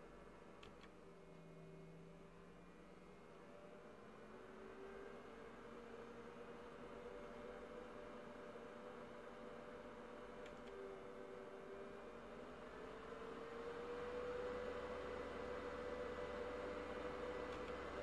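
The HP Compaq dc7800 USDT's cooling fan whirs faintly and speeds up in steps as its idle speed is raised in the BIOS. Its hum rises in pitch and grows louder. There are two faint clicks, one just after the start and one about ten seconds in.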